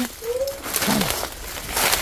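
A bird giving a single short, low call about a third of a second in, the kind of call listeners hear as words. A brief rustle of dry leaves follows near the end.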